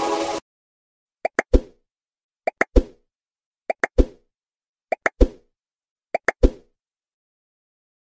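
An edited-in plop sound effect, repeated five times about one and a quarter seconds apart. Each one is two quick clicks followed by a louder, lower plop.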